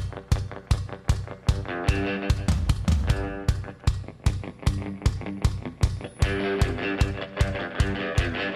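Rock band playing an instrumental passage: electric guitar and keyboard chords over a steady drum beat, about three strikes a second.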